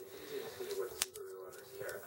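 Hands handling and opening a thin cardboard file card from a toy package, with one sharp click about a second in, over a faint steady hum.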